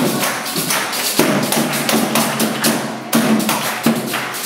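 Live church music: an acoustic guitar strummed along with a group clapping a quick, steady beat.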